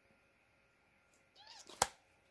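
A hard plastic coin-set case being handled and set down: mostly quiet, then one sharp click near the end, just after a short, faint murmur of voice.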